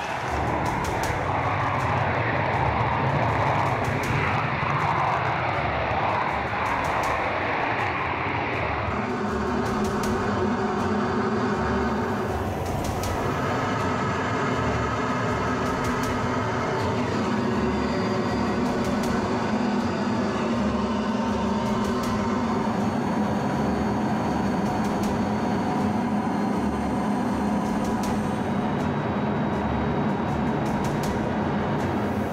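Steady drone of aircraft engines heard from inside an aircraft in flight. A rushing noise fills the first nine seconds or so, then gives way to a steady hum with a few held tones.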